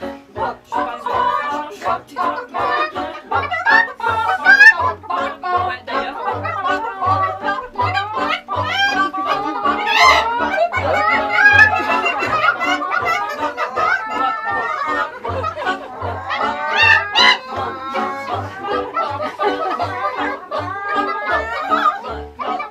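Women's choir singing in many overlapping parts over a steady low beat about twice a second.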